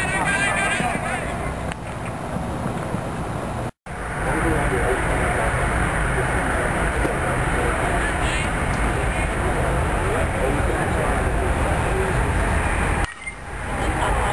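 Steady rushing outdoor noise with heavy low rumble and indistinct voices underneath. The sound drops out completely for an instant about four seconds in.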